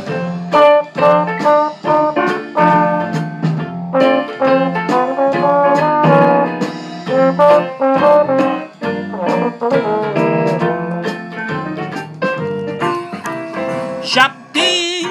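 Valve trombone playing a continuous Dixieland jazz line of short, separate notes over a jazz accompaniment with piano.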